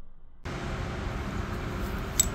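Faint room tone, then about half a second in a sudden switch to steady outdoor background noise: a low rumble with a faint hum, typical of nearby road traffic.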